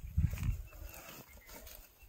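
Thumps and rustling of a large fish in a nylon net being set down on grass and handled, loudest in the first half-second, with low wind rumble on the microphone.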